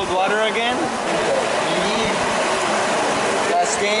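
Voices talking over the steady rush of a whirlpool pool's bubbling water jets.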